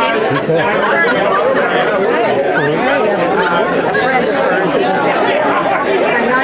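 Overlapping conversation: several people talking at once in a room, with no single voice standing clear.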